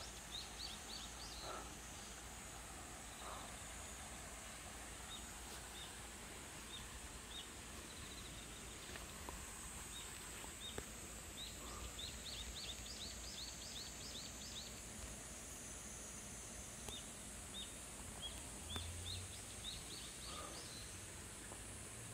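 Faint outdoor ambience: a small bird giving short, high chirps, some single and some in quick runs of about a dozen notes, over a steady high-pitched hiss.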